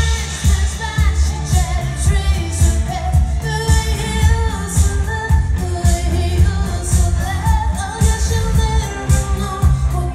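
Live band playing a pop song: a woman sings lead over a steady drum beat, bass, electric guitars and keyboards, heard from within a concert-hall crowd.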